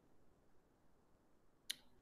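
Near silence, broken by a single sharp mouse click near the end.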